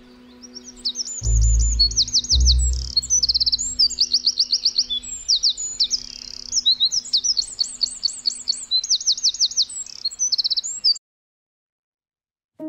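Eurasian wren singing: a long, loud, high-pitched song of rapid trills and chattering notes lasting about ten seconds, then stopping abruptly. Two low thumps come in the first few seconds.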